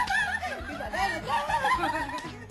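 Women's voices laughing while speaking a teasing line in Thai.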